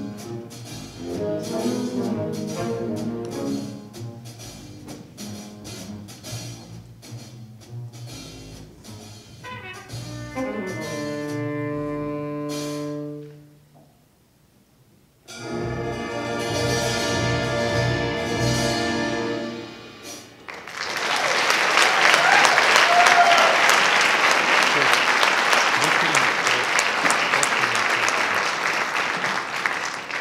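High-school jazz big band of saxophones, trumpets and trombones with rhythm section playing the close of a tune: chords stacking up note by note, a brief pause, then a final held chord. Audience applause follows for about the last ten seconds.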